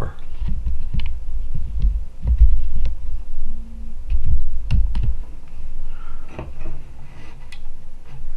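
Handling noise: uneven low thuds and rumble with scattered light clicks and knocks as the camera is zoomed out and the wired electric bell is moved about on a wooden tabletop.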